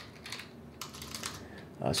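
Computer keyboard keys being typed: a few faint, separate keystroke clicks.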